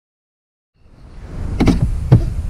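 Silence at first. Then, from a little under a second in, a low rumbling outdoor background rises, with one sharp knock about one and a half seconds in.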